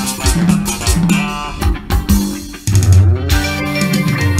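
Live band music: electric bass and guitar over steady drum hits, with a rising slide about three seconds in.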